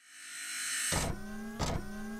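Synthesized logo-sting sound effect: a swell of noise builds up and breaks into a sharp hit about a second in, then a pitched tone rises slowly, with a second hit shortly before the end.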